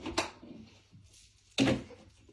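A single sharp knock just after the start, something hard striking something hard.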